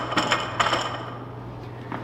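Loaded steel barbell being racked onto the bench's uprights: a few metallic clanks with a ringing clink in the first second, then a low steady hum.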